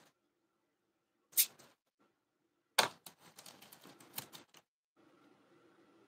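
Nail foil being handled and pressed onto a rock with gloved fingers: a sharp click, then a louder one, followed by a couple of seconds of crackly rustling.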